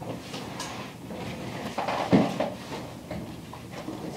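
Classroom clatter and shuffling as students pack up: scattered knocks and rustles of bags, desks and objects being moved, with a louder knock about two seconds in and faint murmuring.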